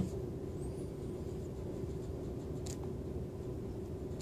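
Quiet room tone with a steady low hum, and one faint light tap a little past halfway.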